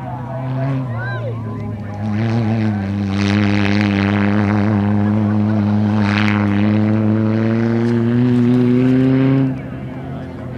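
Super 1650-class off-road racing buggy's engine running at high, steady revs as the buggy takes a dirt corner, with a rush of noise in the middle. The note climbs slightly near the end, then cuts off suddenly.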